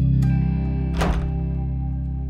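Background music holding low sustained notes, with a small click just after the start and a louder thunk about a second in from a door's lever handle being pressed.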